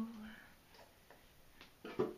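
A woman's singing voice ending a held note on "go", then a quiet pause with a few faint clicks, and a voice starting again near the end.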